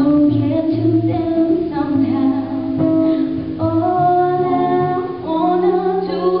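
A woman singing a slow melody with held notes, accompanied by a man playing guitar.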